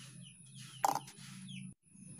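Wire whisk stirring a thick Oreo-biscuit-and-milk cake batter in a bowl: soft scraping strokes, with one louder knock a little under a second in. Small birds chirp faintly in the background over a low steady hum, and the sound drops out briefly near the end.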